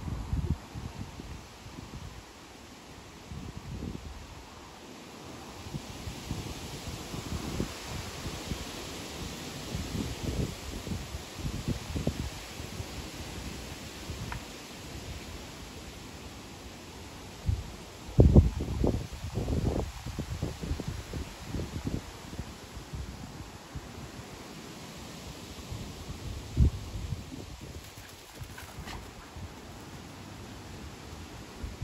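Gusty wind buffeting the microphone in uneven low rumbles, with the trees' leaves rustling in a steady hiss. The strongest gusts come about 18 seconds in and again near the end.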